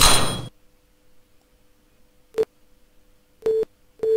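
Simulated 512 Hz tuning-fork tone in a virtual closed-tube resonance experiment. A short noisy burst at the start is followed by a faint steady hum that swells briefly twice, about two and a half and three and a half seconds in, as the air column nears resonance length.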